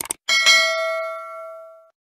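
A quick mouse-click sound effect, then a bright bell ding that rings out and fades over about a second and a half: the notification-bell chime of a subscribe animation.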